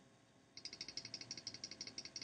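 A faint, rapid, even run of small plastic clicks from a computer, about a dozen a second, starting about half a second in and lasting nearly two seconds.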